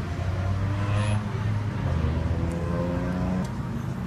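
A motor vehicle engine running close by, a steady low hum.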